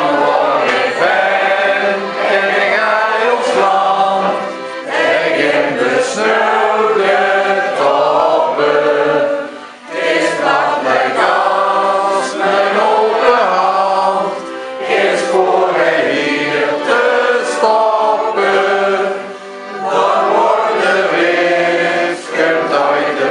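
A roomful of men and women singing a local anthem together, in phrases with short breath pauses about every five seconds.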